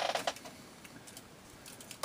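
Faint scattered clicks and a brief rustle of hard plastic model kits being handled off-frame, with the loudest rustle right at the start.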